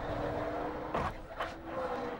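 Onboard audio of a NASCAR stock car in a crash: a steady engine drone, cut by two sharp knocks of impact about a second in and again shortly after.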